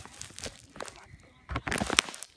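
Handling noise: cloth brushing and bumping against the phone's microphone, with a few light knocks and a louder rustle near the end.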